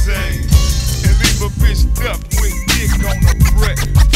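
Hip hop track: a rapped vocal over a beat with heavy bass and regular drum hits.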